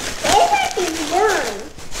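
A small child's high-pitched vocalizing: a short babbled utterance whose pitch glides up and down, without clear words.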